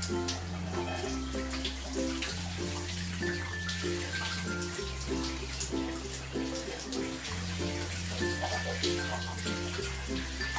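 Background music with held bass notes and a repeating chord pattern, over the steady hiss of a running shower.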